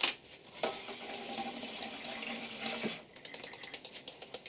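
Kitchen tap running for about two seconds as a natural-bristle dish brush is wetted under it. Then comes a quick run of light ticks as the wet bristles are dabbed against a small ceramic dish.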